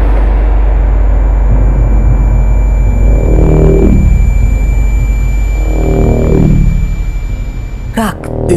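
Loud, deep cinematic drone from the film's sound design, with a thin steady high tone above it and two slow swelling tones, about three and six seconds in.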